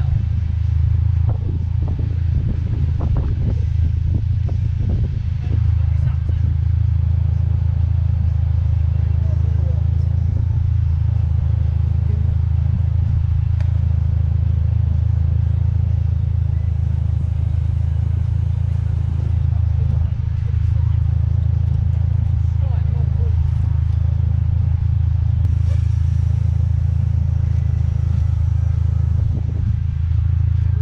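Car engine idling, a steady low drone that holds even throughout. Faint voices can be heard in the first few seconds.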